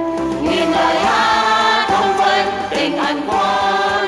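A choir sings in Vietnamese with instrumental accompaniment. Several voices hold long, sustained notes together.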